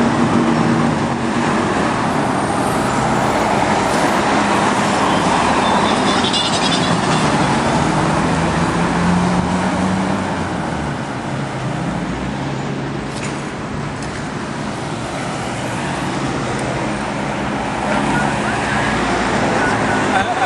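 Street traffic: cars driving past with steady road noise and engine hum, a vehicle's engine most prominent about halfway through.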